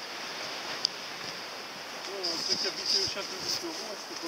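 A steady outdoor hiss of wind, with one sharp click about a second in, then people's voices talking from about two seconds in.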